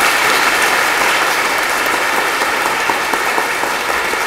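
Large audience applauding, dense steady clapping from many hands that eases slightly toward the end.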